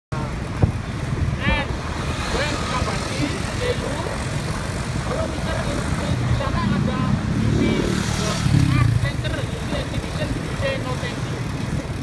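Steady engine and road rumble from a vehicle driving along a city street in light traffic of cars and motorcycles, louder for a couple of seconds just past the middle, with indistinct voices over it.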